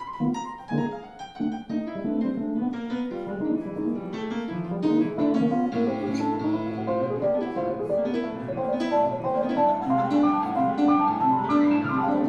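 Grand piano and electronic keyboards playing together in a live instrumental duet. Quick struck notes come first, and from about six seconds in denser held chords join with a low sustained note beneath.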